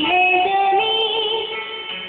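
A song with a singing voice holding long notes that step upward in pitch over an accompaniment, dipping a little in loudness near the end.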